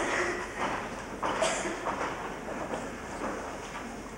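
A few short knocks and rustles of people moving about on a stage, with a low steady hum of the hall behind them.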